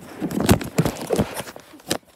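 Handling noise close to the microphone: an irregular run of knocks and rubbing as a clock and the recording phone are moved about.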